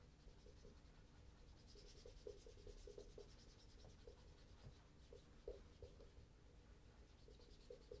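A cloth wrapped round the fingers rubbing faintly in short strokes over the toe of a leather Cheaney Welland oxford while polishing it. The swishes grow a little stronger about two seconds in and again near the end, with small soft ticks between them.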